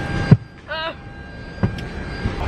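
Steady hum of an airliner cabin at the gate, with a sharp knock about a third of a second in and a lighter one later, from the phone being handled. A brief vocal sound comes just after the first knock.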